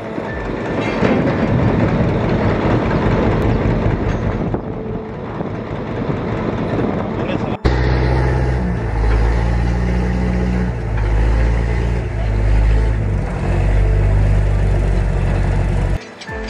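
A boat's motor running on the river with water and wind noise. A sudden cut about seven seconds in gives way to a deep, steady engine rumble that shifts pitch now and then.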